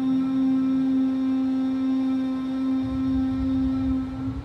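A woman's steady closed-mouth hum held on one low pitch through a long exhale: the bee-like humming breath of Bhramari pranayama.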